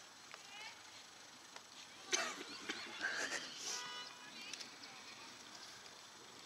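Bird calls, short chirps and high gliding notes, over open-air background. A louder, busier burst of calls and noise comes about two seconds in and lasts a second or two.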